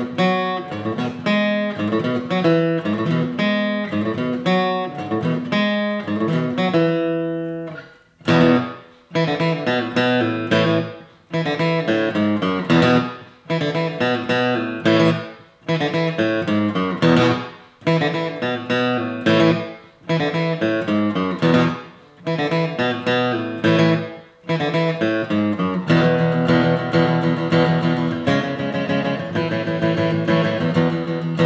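Guitar music played as strummed chords. It breaks off briefly about eight seconds in, then goes on in phrases that each ring out and fade, and becomes steady and busier near the end.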